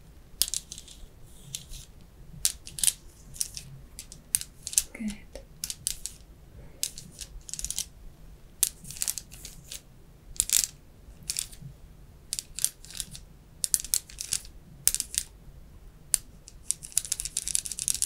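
Plastic scalp massage tool rubbed up and down in short, irregular scratchy strokes, about one or two a second, with a longer run of strokes near the end.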